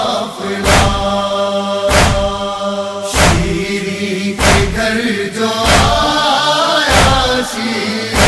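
A chorus of voices holding a long, slowly shifting chant between the lines of an Urdu noha, over steady matam chest-beating strikes, about one every 1.2 seconds.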